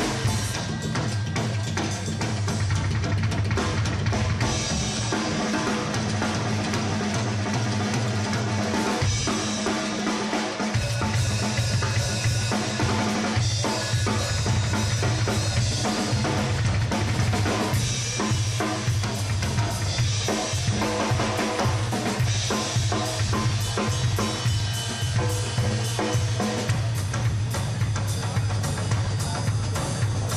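Rock band playing an instrumental stretch with the drum kit to the fore: kick, snare and rimshot hits over a steady low bass line that drops out for a moment about nine seconds in.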